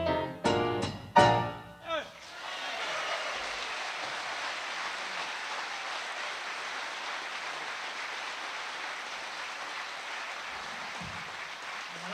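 Jazz trio of grand piano, double bass and drum kit ending a tune with a few last punched chords. The chords give way about two seconds in to audience applause, which carries on steadily.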